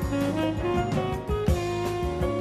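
Jazz recording with a tenor saxophone lead over a band, with a drum kit keeping an even beat.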